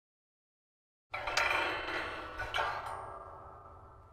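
A chiming logo sound effect: bright metallic notes struck about a second in and again about a second later, ringing on and fading away.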